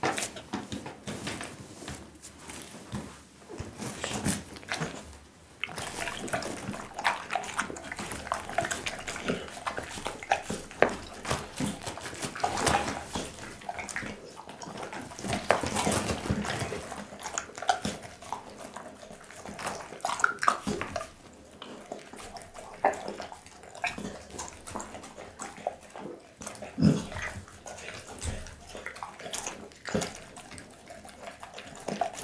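A pit bull chewing and lapping raw beef tongue slices, a steady run of wet smacking and sloppy bites with irregular clicks of teeth and tongue.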